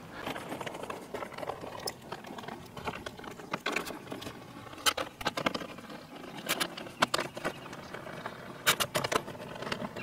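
Ratchet wrench with a 10 mm socket and metal bolts giving irregular clicks and taps as bolts are fitted along the top of a truck grille.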